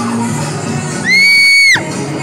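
Dance music playing, cut across about a second in by a child's loud, high-pitched shriek that holds one pitch for under a second, sliding up at the start and dropping away at the end.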